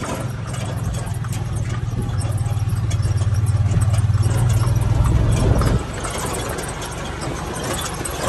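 Side-by-side utility vehicle's engine running as it drives over a grass pasture. The engine note grows gradually, then drops off suddenly about six seconds in, with light rattling over the rough ground.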